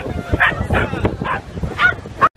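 A corgi barking, several short, sharp barks in a row, with crowd chatter behind.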